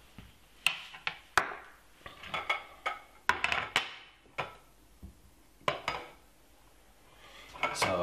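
A ceramic plate with a stainless steel box grater on it being moved and set down on a glass chopping board: a string of sharp clinks and knocks of china, metal and glass. Most of them come in the first four seconds, with a few more before a quieter stretch near the end.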